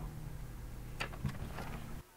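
Steady low background rumble, with a couple of faint short clicks about a second in.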